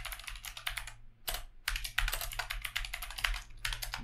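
Typing on a computer keyboard: a quick run of keystrokes with a brief pause just over a second in, over a steady low hum.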